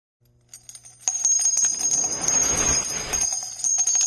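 Bells jingling and ringing as an added intro sound effect. A high ringing that holds steady, with many quick strikes, starts suddenly about a second in.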